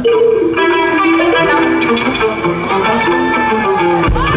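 Live band music: a quick plucked-string melody on guitar, with a long held note coming in about three seconds in.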